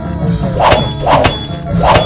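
Swords clashing three times in quick succession, each strike a sharp metallic clang with a short ring, over background music.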